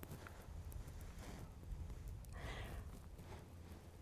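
Two soft puffs of breath blown gently onto a butterfly's abdomen to make it open its wings, about a second in and again a second later, over a faint low rumble.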